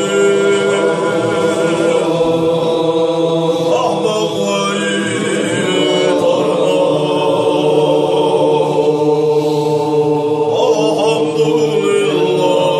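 A group of men's voices chanting a Chechen Sufi zikr, holding long drawn-out notes, with a change of pitch about halfway through.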